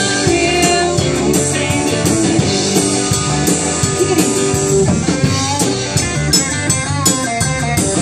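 Live rock band playing loudly, with electric guitars, bass, keyboard and a drum kit keeping a steady beat, and a woman singing.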